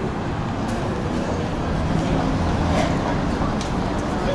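Busy city street traffic: a steady rumble of passing vehicles, swelling a little in the second half.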